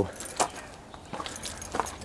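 Scattered light clicks and rattles, with one sharper click about half a second in and a few more near the end.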